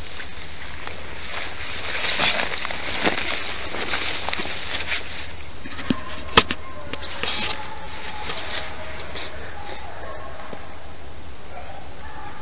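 Brush and weeds rustling as someone pushes through them, with a sharp knock about six seconds in, the loudest sound. In the last few seconds, beagles bay in the distance as they run the hare's trail.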